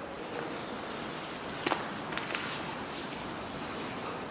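Steady hiss of background noise with a few faint ticks, the clearest about two seconds in.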